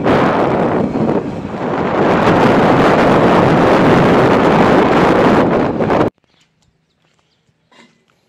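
Heavy wind buffeting on the microphone of a moving motorcycle, mixed with its engine and road noise, growing louder about two seconds in. It cuts off suddenly about six seconds in, leaving near silence.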